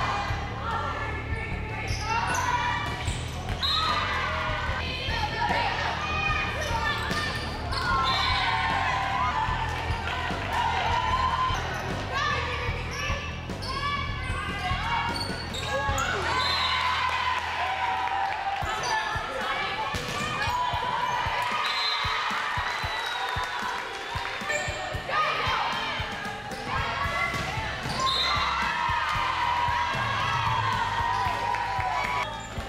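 Live gym sound of an indoor volleyball rally: the ball being struck again and again, with players and spectators shouting and calling over a steady low hum of the hall.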